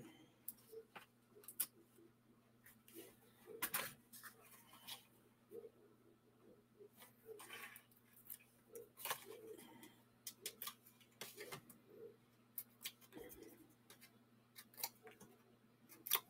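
Faint, scattered clicks and rustles of cardstock being handled as foam adhesive dimensionals are peeled from their backing and pressed onto the back of a paper card panel.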